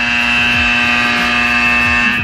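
An alarm buzzer sounding one loud, steady, unwavering tone.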